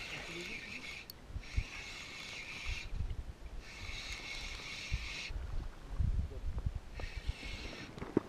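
Spinning reel being cranked in four short spells with pauses between them, a steady high gear whir each time, as a hooked fish is reeled in; a few dull knocks of handling sound between the spells.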